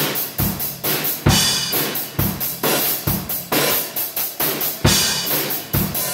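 Pearl acoustic drum kit being played in a steady beat: a bass drum hit a little under once a second under quick, regular cymbal strokes with snare hits.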